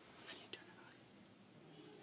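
Near silence: quiet room tone with faint whispering and a couple of small soft ticks.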